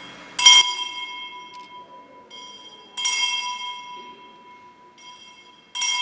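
Small altar bell struck three times, about two and a half seconds apart, each ring dying away: the consecration bell rung at the elevation of the host during Mass.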